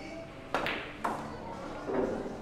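A pool cue strikes the cue ball with a sharp click about half a second in. About half a second later comes a second click as the cue ball hits an object ball.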